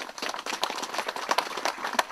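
Audience applauding, with separate hand claps heard at an irregular, quick rate.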